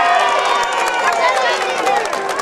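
A crowd of demonstrators calling out together in a steady mass of overlapping voices, with scattered clapping.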